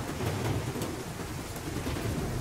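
Thunderstorm sound effect: a low rumble of thunder over the steady hiss of rain.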